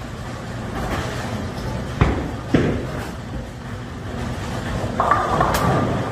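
Bowling ball rolling down a wooden lane with a low rumble, then hitting the pins: two sharp crashes about two seconds in.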